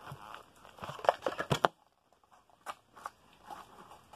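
Plastic blister packaging and card crinkling and tearing as a Hot Wheels car's package is opened, a run of small crackles and clicks that stops after under two seconds, leaving only a few faint clicks.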